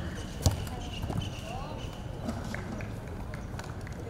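A football kicked once, a sharp thump about half a second in, with lighter knocks of the ball after it, among children's voices calling out during play.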